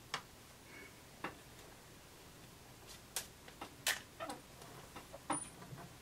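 Seam ripper cutting basting stitches in fabric: faint, irregular small clicks and snaps of thread being cut, with light handling of the cloth.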